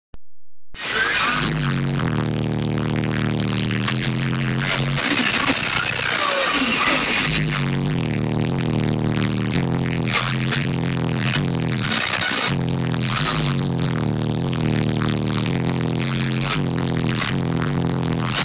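Electronic music with a steady beat and a heavy bass line playing through a car stereo with an aftermarket subwoofer, heard inside the car's cabin.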